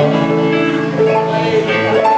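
Live band instruments sounding loose held notes between songs, a guitar among them: steady sustained tones that change pitch a few times and mostly let go near the end.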